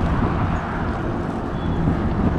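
Wind buffeting the microphone of a camera held on a moving bicycle, a choppy low rumble, mixed with road noise from riding along a road.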